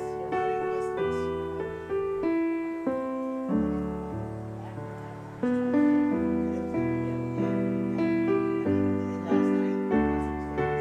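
Piano playing slow, sustained chords over low bass notes, with a new chord about every second. It grows louder about halfway through.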